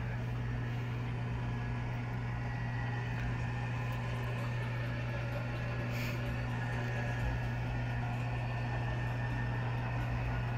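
Electric lift motor of a pop-up TV cabinet running, raising the screen out of the desk with a steady, even hum.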